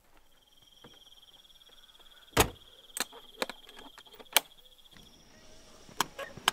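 Metal latches and fittings on a camper trailer clicking and knocking shut: four sharp clicks, the first and last the loudest. Under them runs a steady, high-pitched buzzing tone that stops about five seconds in.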